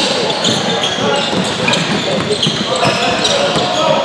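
Basketball dribbling on a hardwood gym floor, with brief high sneaker squeaks and a hubbub of shouting voices echoing in the hall.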